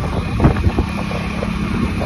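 Wind buffeting the microphone over a motorcycle's engine and road noise while riding, a steady low rumble with a faint engine hum and a brief knock about half a second in.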